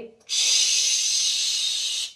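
A steady hissing whoosh standing for shooting stars being thrown. It starts about a quarter second in, holds level for under two seconds and stops abruptly.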